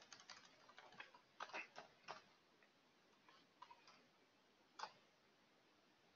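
Faint computer keyboard typing: a quick run of key clicks in the first two seconds, a few more a little later, and one louder click near five seconds in.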